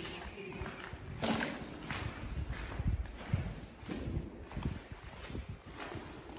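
Footsteps crunching on the gravel and ballast floor of a brick railway tunnel, at an uneven walking pace, with a louder crunch about a second in.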